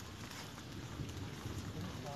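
Footsteps crunching and rustling through dry leaf litter and brush, a steady run of small crackles.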